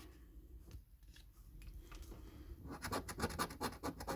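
A coin scratching the coating off a scratch card: faint scraping at first, then quick rasping strokes, several a second, from about three seconds in.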